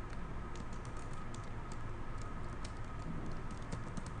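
Computer keyboard keys clicking in irregular, unhurried keystrokes as a command is typed, over a steady low background hum.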